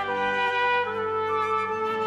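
Trumpet playing a melody in held notes together with flutes, as part of a chamber orchestra.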